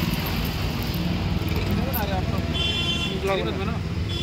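Roadside street traffic noise: a steady low rumble of vehicles, with voices in the background and a brief high-pitched tone a little past halfway.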